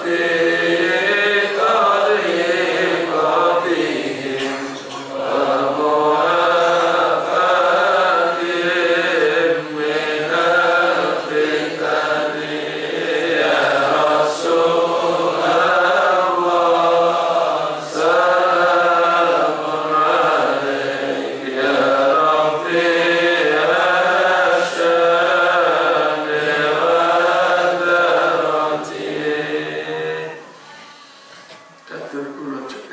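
Devotional chanting of a sholawat, an Islamic song in praise of the Prophet, sung in long, wavering, melismatic phrases. It stops near the end.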